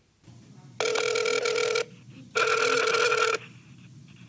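Ringback tone of an outgoing call heard through a smartphone's speakerphone: two warbling rings, each about a second long, with a short pause between them.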